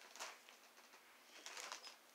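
Near silence: room tone with a few faint, short rustles, a small cluster about a second and a half in.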